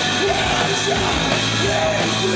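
A live rock band playing loud, with the singer belting a shouted vocal line over electric guitar.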